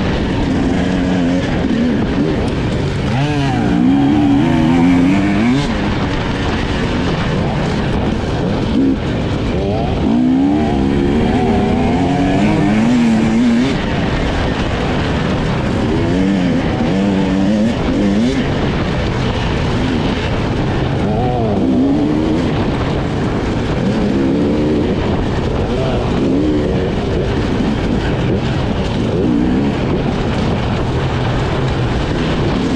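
Husqvarna enduro motorcycle engine revving hard, its pitch climbing and dropping again and again as the rider works the throttle and shifts gears on a trail, over a steady rush of wind and riding noise.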